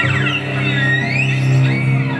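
Live ensemble music featuring a cello: a low note is held steadily throughout, while a higher melodic line slides up and down in smooth glides above it.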